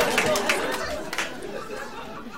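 Live audience laughing, with scattered claps, dying away in a large hall.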